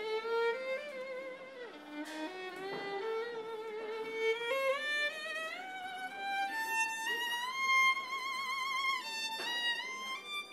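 Solo violin playing a slow melody with vibrato, the line climbing step by step in pitch and settling on a long held high note near the end.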